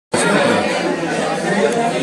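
Many voices talking over one another: a steady chatter of students in a lecture room.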